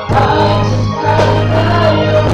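Live worship song: several voices singing together over a keyboard holding a sustained low note.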